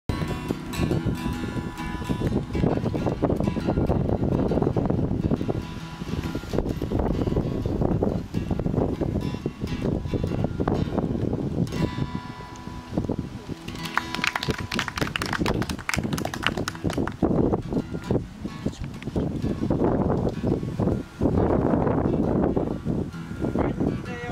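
Acoustic guitar strummed and played live, a steady run of strokes with held chords.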